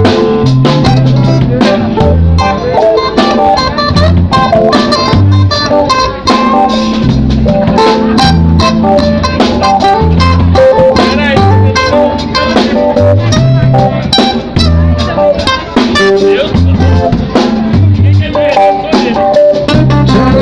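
A live rock/blues band playing loudly: electric guitar lines over bass guitar and a drum kit with steady drum hits.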